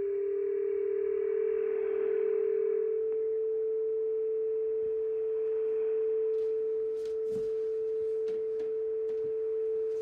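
Steady whistle from a Yaesu FRG-7700 communications receiver tuned to a 20 m single-sideband frequency: a carrier on the channel heard as a pure tone. A second, slightly lower tone beats against it for the first three seconds, then one tone holds, with faint clicks of static in the second half.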